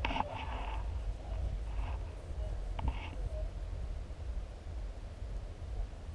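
Wind buffeting a camera microphone, a steady low rumble, with faint rustling and a single light click a little before halfway.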